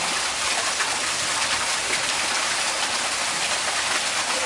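Steady rushing of running water, an even hiss with no pauses.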